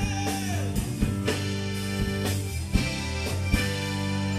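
Live rock band playing an instrumental passage: electric guitar and accordion hold notes over drum kit hits.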